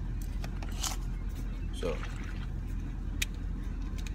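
Steady low rumble of a car cabin, with a few clicks and rustles from a plastic protein-shake bottle being handled and its cap twisted.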